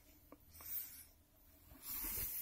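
Mostly quiet small-room tone, with a faint click and then a brief soft brushing noise about half a second in: faint handling noise.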